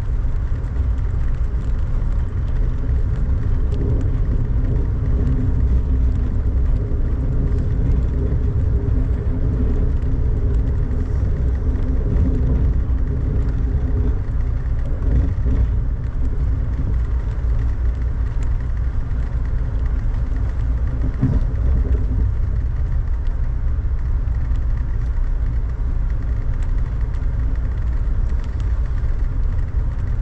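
Steady low rumble of a moving Amtrak passenger train heard from inside the car, with a faint hum of steady tones running under it.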